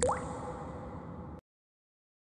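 A single water drop falling into water: a sharp plink whose pitch rises quickly, followed by a short ringing tail over a low rumble. It all cuts off suddenly after about a second and a half.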